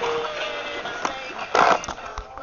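Animatronic singing fish toy playing its song through its small speaker: a tinny held note, then a louder noisy clunk about one and a half seconds in. The toy is called "kind of dead".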